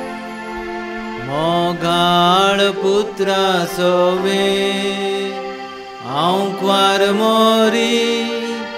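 Konkani hymn sung by a small group of voices over sustained Yamaha electronic keyboard chords. The voices come in about a second in and again about six seconds in, each phrase opening with an upward slide.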